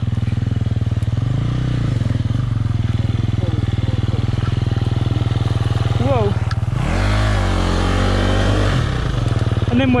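Enduro motorbike engine idling, with a short rev about a second in and a longer rev, held for about two seconds, starting around seven seconds in.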